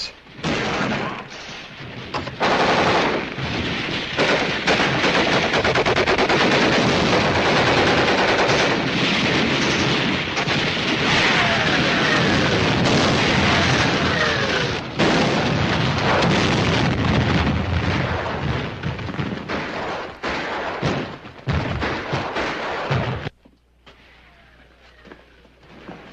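Battle sound effects on an old film soundtrack: dense, continuous machine-gun and rifle fire mixed with shell explosions. It starts just after the beginning and cuts off suddenly near the end.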